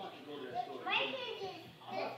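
A young child vocalising without clear words, one call rising in pitch about a second in.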